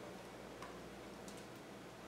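Quiet room tone with two faint, light clicks about a second apart.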